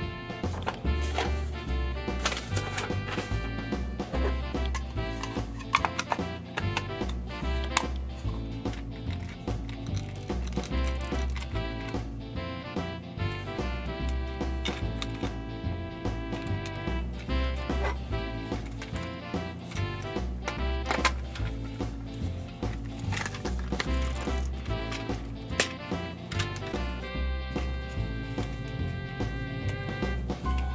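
Background music with a steady, repeating bass beat and held melody notes.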